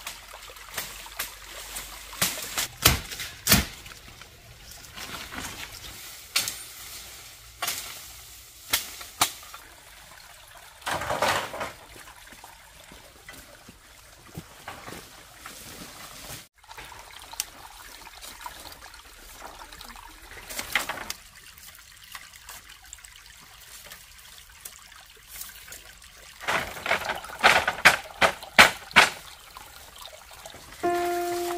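A small stream trickling over rocks, with scattered sharp knocks and rustles of bamboo and dry leaves being handled, thickening into a quick run of knocks near the end.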